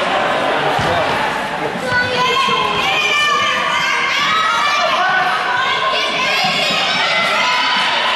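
Children shouting and calling out over one another during a youth soccer game, echoing in a gym, with long high calls from about two seconds in. A ball thuds on the wooden floor now and then.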